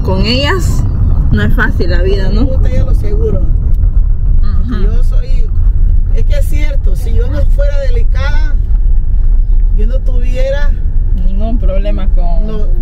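Moving car heard from inside the cabin: a steady low rumble of engine and road noise, with voices talking over it.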